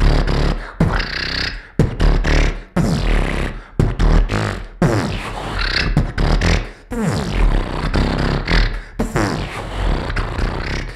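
Solo human beatboxing into a handheld microphone: deep bass kicks about once a second, with sharp percussive clicks and falling pitched sweeps between them.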